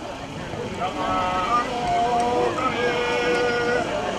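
A voice chanting a kagura song in long held notes, each note held for about half a second to a second before stepping to another pitch. The taiko drums are silent.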